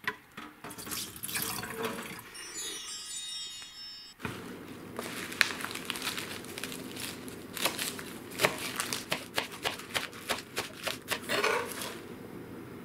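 Water poured out of a plastic salad spinner bowl into a kitchen sink, splashing and dripping for the first few seconds. From about five seconds in, a knife chops lettuce leaves on a plastic cutting board in a quick, irregular series of sharp taps.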